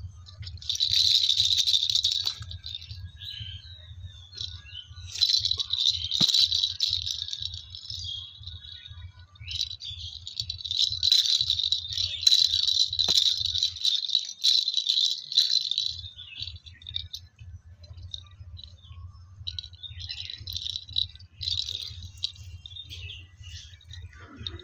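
A baby's plastic ball rattle shaken in several separate bursts, the longest lasting about four seconds.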